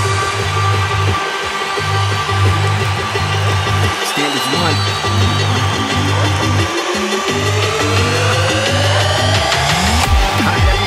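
Electronic dance music with a heavy bass that drops out briefly three times, and a synth sweep rising in pitch over the last three seconds.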